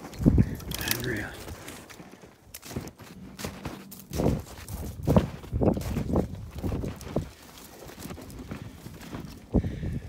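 Footsteps in snow, a run of short crunches at about two steps a second, with brush and twigs rustling against clothing.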